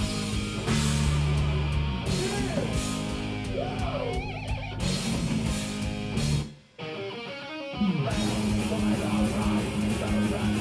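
Live heavy rock band playing an instrumental passage: distorted electric guitars, bass and drum kit, with bending guitar notes a few seconds in. The band stops dead for a moment about six and a half seconds in, a low note slides downward, and the full band comes back in at about eight seconds.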